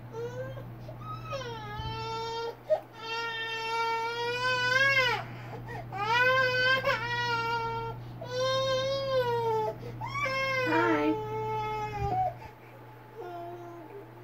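Baby crying in about five long, high-pitched wails, each a second or two long, rising and falling and dropping away at the end, over a steady low hum.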